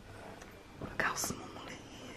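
A woman's faint, breathy whispered sounds, with short hisses about a second in.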